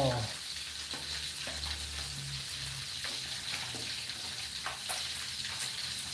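Whole catfish deep-frying in hot oil in an aluminium wok: a steady sizzle with small crackles. A metal spatula knocks and scrapes lightly against the wok a few times as the fish are turned.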